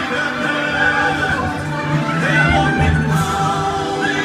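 Music: a song with a backing accompaniment and an operatic, tenor-style singing voice holding wavering, vibrato notes.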